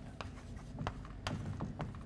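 Chalk writing on a blackboard: a string of short taps and scratches as letters are stroked onto the slate.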